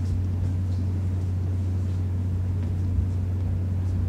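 A steady low hum, with one faint knock about three seconds in.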